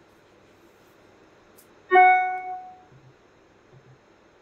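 A single bright chime, one note with overtones, striking about two seconds in and fading over about a second, typical of a computer notification tone.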